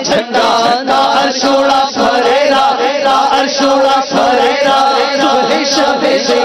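Men's voices chanting a devotional Urdu naat in praise of the Prophet's arrival, sung by voices alone, with melodic lines that rise and fall continuously.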